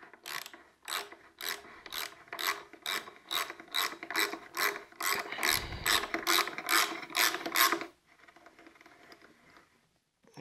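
Ratchet wrench clicking in a steady rhythm, about two clicks a second, as it runs a spark plug down into the engine's cylinder head. The clicking stops about eight seconds in, when the plug is seated.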